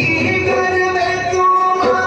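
Devotional aarti music with singing, with sustained sung notes over instrumental accompaniment.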